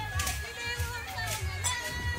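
A crowd of women's and girls' voices singing and calling out over one another.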